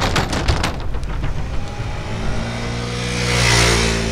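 Loose bridge deck plates clattering under bicycle wheels, a rapid run of knocks in the first second and a half. After that a steady engine hum with a hiss swells toward the end.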